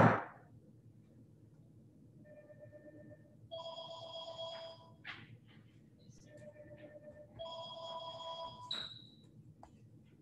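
A sharp thump at the start, then a phone ringtone: a lower chime followed by a longer, higher chime, the pair sounding twice.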